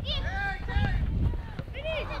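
Several voices shouting and calling out over one another during youth soccer play, with wind rumbling on the microphone.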